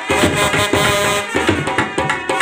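Brass band playing live: trumpets and a clarinet carry a sustained melody over a snare drum and a bass drum beating a steady rhythm.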